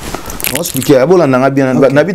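Speech only: a man talking animatedly.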